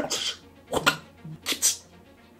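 A man sniffing close at the food: three short, sharp sniffs or huffs through the nose, about three-quarters of a second apart.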